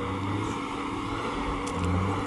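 Chrysler Crossfire's V6 engine idling with a steady low rumble, heard from outside the car.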